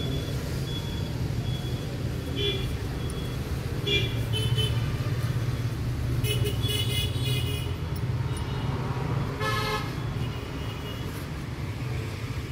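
Road traffic: a steady low engine rumble with vehicle horns tooting several times, the loudest about nine and a half seconds in.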